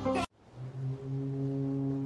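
Electronic music stops abruptly a quarter second in. After a short gap, one low, steady horn note begins and holds.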